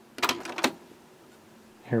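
A quick cluster of four or five sharp mechanical clicks from a Sony CMT-NEZ30's cassette deck as the record button is pressed and the electronically controlled deck engages to record.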